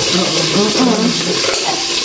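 Women's voices talking over a steady, sizzle-like hiss from food cooking in a pan.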